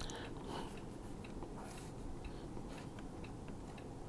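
Felt-tip marker drawing lines on a whiteboard: a scatter of faint, short scratchy strokes over low steady room noise.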